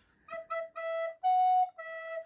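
Wooden recorder playing five notes: E, E, a longer E, a higher F sharp that is the loudest, then back to E. It is a short study phrase built around the F sharp.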